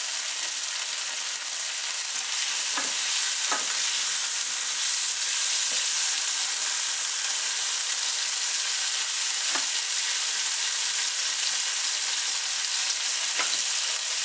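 Pork balls sizzling as they fry in garlic butter in a frying pan, a steady hiss throughout. A few light knocks of a wooden spatula in the pan as they are turned.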